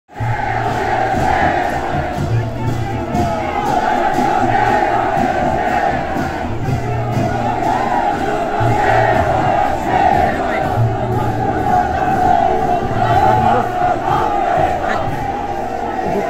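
A dense crowd of thousands shouting together without a break, with brass-and-drum band music underneath.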